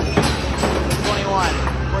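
Arcade background sound: music playing with voices over a steady low hum, and a couple of short knocks just at the start.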